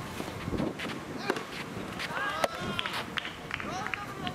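Soft tennis rally: several sharp pops of the soft rubber ball struck by rackets, mixed with players' running footsteps and short calls on the court.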